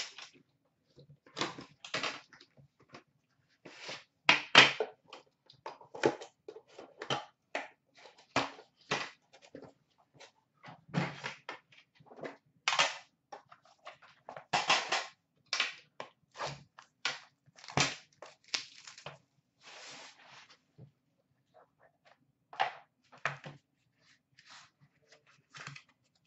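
Hands unwrapping and opening a sealed hockey card box: a run of short, irregular rustles, crinkles and light knocks as wrapping is torn off and the cardboard box and its inner case are handled.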